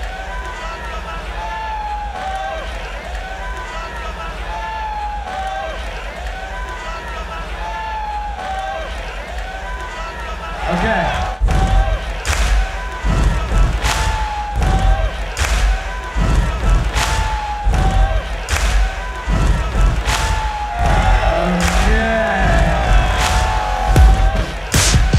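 Electronic bass-music track: a looping melodic phrase of gliding, arching tones repeats about once a second over a deep bass. About eleven seconds in, a heavy beat drops in with hard kick and snare hits.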